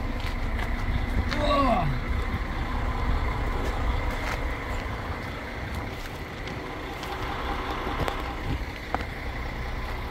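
A vehicle engine running steadily: a low rumble with a faint steady whine. About a second and a half in there is a short vocal sound falling in pitch.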